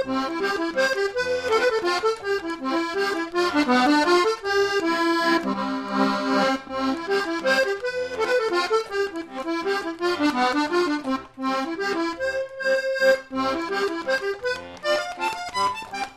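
Lively instrumental background music: a quick melody of short running notes over a regular, bouncing bass.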